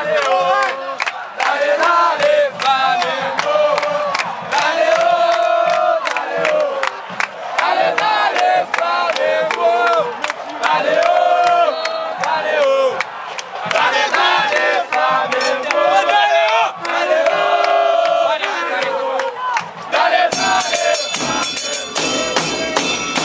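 Football supporters chanting a song in unison, backed by bass drums (bombos) with cymbals struck on top. Near the end the drumming turns into a fast, dense beat.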